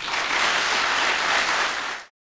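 Audience applauding steadily; the clapping cuts off suddenly at the very end.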